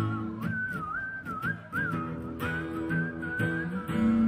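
A person whistling a melody with a microphone, in short rising and falling phrases, over two acoustic guitars strumming chords.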